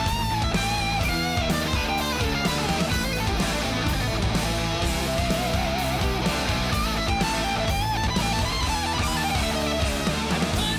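Hard rock band mix playing back: a lead electric guitar solo with bent notes over distorted guitars, bass and drums.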